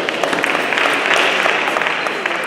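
Dense, irregular clicking of table tennis balls off bats and tables, many overlapping hits running together into a steady clatter, with the rally's own strokes among them.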